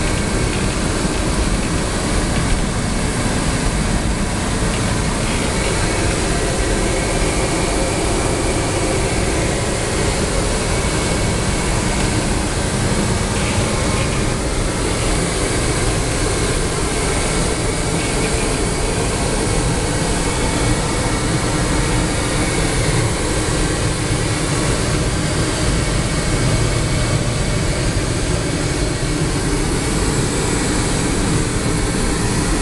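Steady in-flight cabin noise inside an Avro RJ85 airliner: the even rush of airflow and its four turbofan engines, with a faint high tone running through it.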